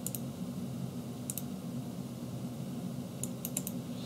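Computer mouse clicking while a file dialog is navigated: a double click at the start, another about a second and a half in, then a quick run of about four clicks near the end, over a steady low hum.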